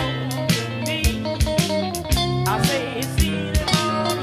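Blues band playing an instrumental break: electric guitar lead lines with bent notes over bass and drums keeping a steady beat.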